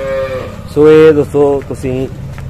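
Cow mooing: a long drawn-out call that tails off about half a second in, followed by a few shorter calls.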